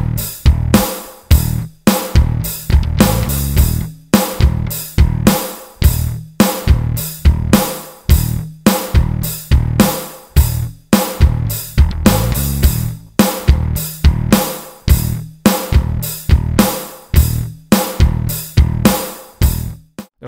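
Electric bass played through a Lusithand Ground & Pound distortion pedal: a distorted riff of evenly spaced notes with sharp attacks, about two to three a second.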